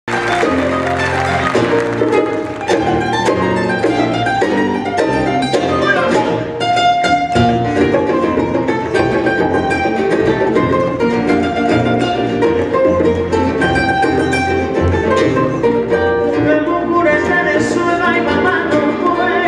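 Romantic bolero trio music, instrumental introduction: a bright requinto guitar picks the lead melody over strummed nylon-string guitar and a walking acoustic bass guitar.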